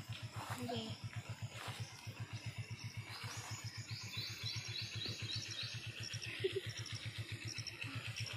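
A bird calling, a quick series of short high notes from about three and a half seconds in, then fainter high pips. Under it runs a steady low pulsing hum, about eight beats a second.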